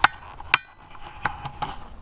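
A few sharp knocks: a loud one at the very start, another about half a second in with a brief ring, then two fainter ones.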